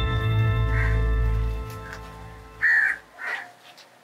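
Background music fading out over the first two seconds, then a crow cawing twice near the end, the first caw loud.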